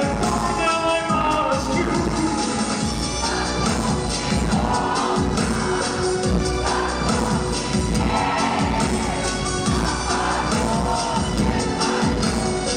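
Loud live darkwave band music in an instrumental passage with a steady beat, a run of notes stepping down in the first two seconds, and the crowd cheering over it.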